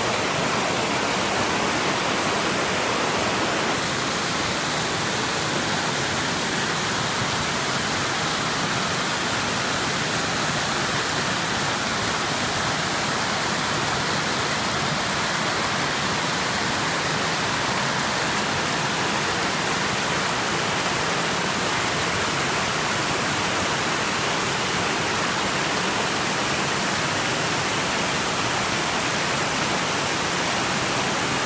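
Steady rush of a waterfall: white water cascading down wet rock slabs. It eases very slightly about four seconds in and then holds even.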